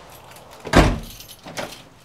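A front door shutting with a heavy thump about three-quarters of a second in, followed by a smaller clunk near the end.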